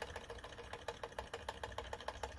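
Small Stirling engine model running on a methylated spirits burner, its piston and flywheel linkage ticking in a fast, even rhythm of about ten clicks a second.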